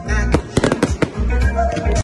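Fireworks bursting and crackling, with a quick run of sharp cracks from about half a second to one second in, over music with a heavy bass.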